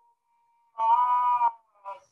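A singing voice from a played-back folk song: a held, wavering sung note starting about a second in, then a short second note near the end.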